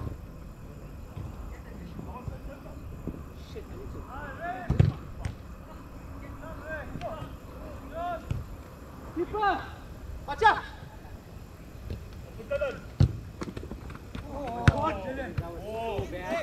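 Players' shouts across a five-a-side astroturf pitch, punctuated by sharp thuds of a football being kicked, the loudest about five seconds in and others near the end.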